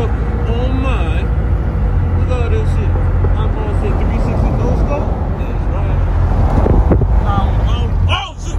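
Steady low rumble of road and engine noise inside a moving pickup truck's cab, with indistinct voices faintly underneath.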